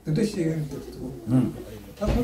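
A man speaking in a small room, in a low voice.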